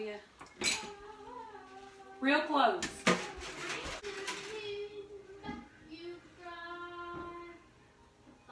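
Dishes and cutlery clinking as they are washed by hand in a kitchen sink, with a few sharp clinks, under a voice that holds some long drawn-out notes in the second half.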